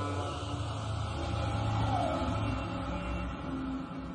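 Background music score: a steady low drone under long held tones, with a short sliding note about two seconds in.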